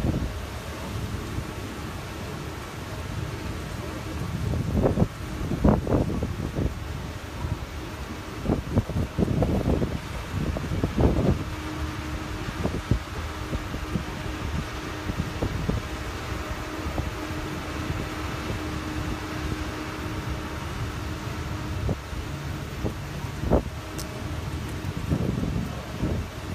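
Land train running along a path, heard from its open rear carriage: a steady rumble, with a steady hum for several seconds in the middle of the run.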